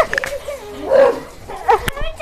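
A dog barking: a short bark about a second in and a brief yip near the end.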